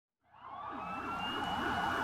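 Several sirens wailing together, their pitches sweeping up and down and overlapping, fading in from silence about a quarter second in and growing louder.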